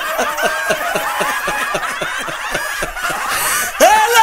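Laughter: a quick run of short ha-ha sounds, about four or five a second. It stops shortly before a sudden loud sound with a rising pitch comes in near the end.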